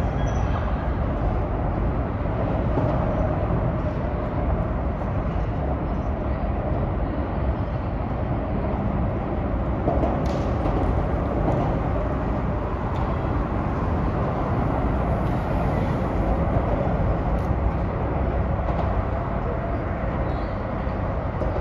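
Steady traffic noise, a continuous low rumble without breaks.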